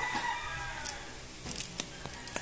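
Soft clicks and rustles of a hook-and-loop sanding disc being pressed by hand onto the pad of a random orbital sander. A faint, drawn-out call falls slightly in pitch through the first second.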